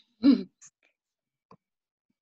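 A person briefly clearing their throat: one short, loud rasp about a quarter of a second in.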